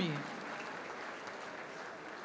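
Audience applause, slowly dying down.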